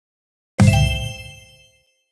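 One bell-like ding with a low thud, struck about half a second in and ringing away over about a second: the ball-draw game's chime as a drawn ball is announced.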